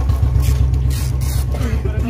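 Motorcycle engine idling close by: a steady, low, evenly pulsing rumble that starts abruptly.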